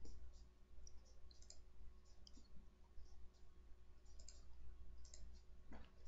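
Faint computer mouse clicks, scattered irregularly a few at a time, over a low steady hum, with a soft thump at the very start.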